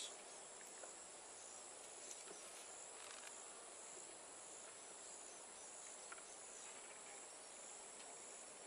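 Faint steady high-pitched chirring of insects in the background, with a few soft clicks as wooden hive frames are nudged with a hive tool.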